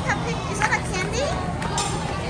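Young children's voices and chatter in a busy shop, over background music.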